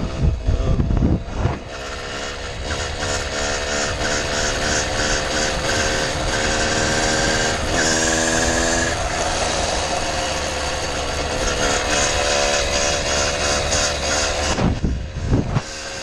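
Small two-stroke motorized-bicycle engine running at a steady cruise, its buzzing pitch drifting slightly up and down. Low wind rumble on the microphone for the first second or so and again near the end.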